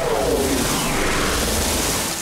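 Cartoon sound effect: a loud rushing whoosh over a low rumble, with its pitch falling through the first second.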